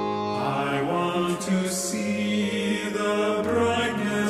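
A small four-part choir of soprano, alto, tenor and bass sings a hymn in harmony over sustained keyboard chords. The voices enter about a third of a second in.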